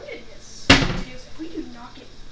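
A single loud, sharp knock about two-thirds of a second in, a hard object striking something in the kitchen, with brief voices before and after it.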